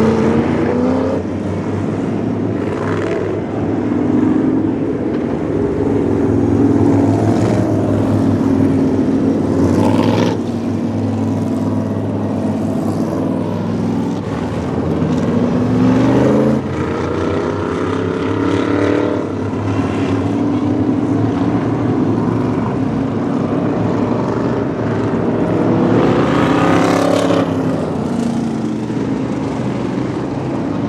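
A field of Pure Stock race cars running laps on a short oval. Their engines run steadily under one another, and the pitch rises several times as cars accelerate.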